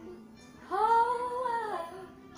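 A high voice singing or humming one held note, about a second long, starting just over half a second in and gently rising then falling in pitch.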